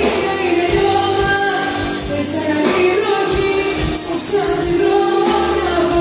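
Live pop band playing with a woman singing lead into a microphone, backed by drums and cymbals, in a Greek-language song.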